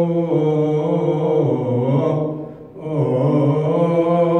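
Men chanting Ethiopian Orthodox liturgical chant in long held, slowly moving notes, with a brief pause for breath a little past halfway.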